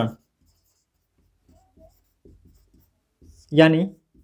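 Marker pen writing on a whiteboard: a run of short, faint strokes as a word is written.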